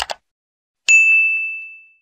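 Subscribe-button animation sound effects: a quick double mouse click, then about a second in a bright notification-bell ding that rings on one high tone and fades away.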